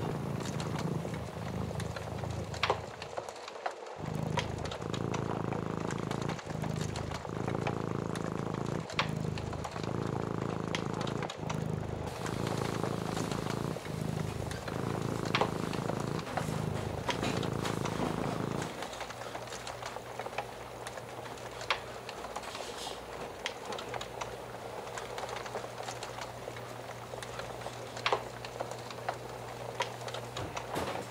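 Cat purring in steady rhythmic cycles of about one a second, with faint scattered pops of a crackling wood fire. A little past halfway the purring drops to a quieter, steadier low hum.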